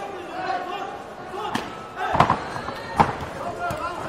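Blows landing in a full-contact kickboxing bout: a few sharp thuds from about halfway in, the loudest two about a second apart, over voices.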